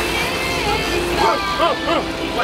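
A sport-fishing boat's engines running under a steady rush of wind and sea, with voices calling out about a second in and again near the end.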